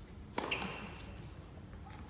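A racket striking a tennis ball: one sharp pock about half a second in, closely followed by a second click and a short ringing tail in the arena.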